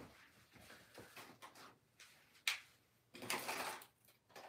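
Faint handling noises off-mic as someone searches for an object: scattered soft knocks and rustles, a sharp click about two and a half seconds in, then a louder rustling scrape near the end.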